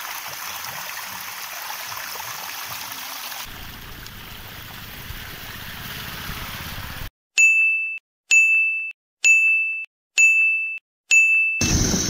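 Water spilling over a concrete ledge, a steady trickling rush, for about the first seven seconds. Then five identical bright ding chimes, about a second apart, each with dead silence between.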